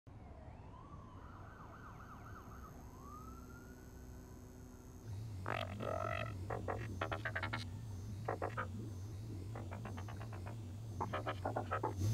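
A faint siren wailing, its pitch rising and falling, for the first five seconds. Then a steady low electronic hum sets in, with runs of short electronic bleeps and chirps.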